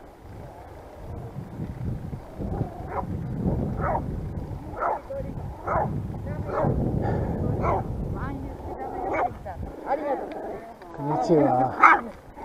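A dog barking in short, repeated barks about once a second, with a louder burst of barking just before the end, over low wind rumble on the microphone of a moving bicycle.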